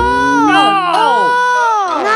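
A child wailing in drawn-out cries that rise and fall in pitch, several overlapping one another.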